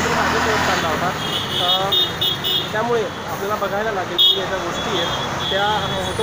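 Busy city-street traffic noise with people talking over it, and runs of short high-pitched beeps, a few a second, in the middle and latter part.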